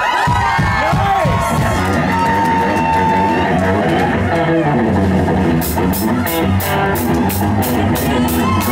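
Live rockabilly band led by hollow-body electric guitar: a lead line with string bends and a long held note over a steady bass line. Cymbal strokes come in about six seconds in, at roughly three a second.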